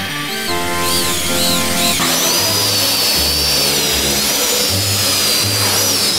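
Electric ducted fan motors on a motorized office chair whining at a high pitch, the whine wavering and growing stronger with a rush of air about two seconds in. Background music with a steady bass line plays underneath.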